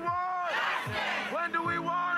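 A woman shouting a protest chant through cupped hands, with a crowd of protesters. There are long drawn-out calls: one ends about half a second in, and another starts about a second in and is still held at the end.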